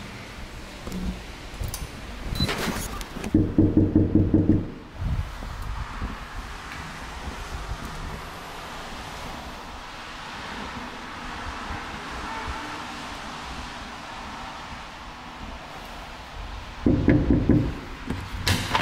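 Knocking on a door: a quick run of knocks, about four a second, a little over three seconds in, then a second run of knocks near the end, with quiet room hiss between.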